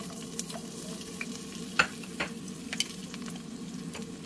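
Sliced garlic tipped into oil in a nonstick wok and starting to fry, a steady sizzle with a low hum under it. A few sharp clicks come near the middle as pieces drop onto the pan.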